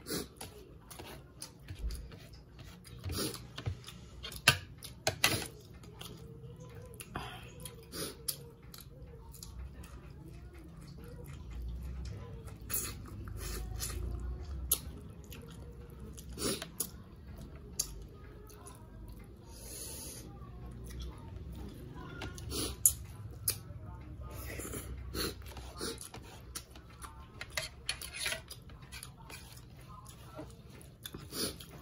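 Close-up mouth sounds of a person eating rice and smoked fish by hand: chewing with frequent short wet clicks and lip smacks at irregular intervals.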